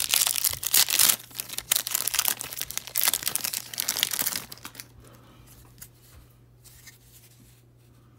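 Foil hockey card pack wrapper being torn open and crinkled, a dense crackling that lasts about four and a half seconds, followed by only faint handling sounds from the cards.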